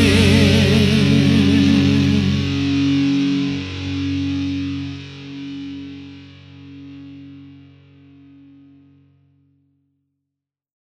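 Final distorted electric guitar chord of a punk song ringing out, with a held, wavering sung note over it for the first couple of seconds. The chord swells and dips as it fades, dying away to silence about nine seconds in.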